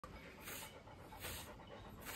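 A Chow Chow dog panting faintly, a soft breathy rhythm that swells about every second.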